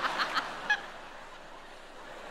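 A woman's high-pitched giggling in quick repeated bursts, which trails off within the first half-second. A single click follows, and then only a faint, even background.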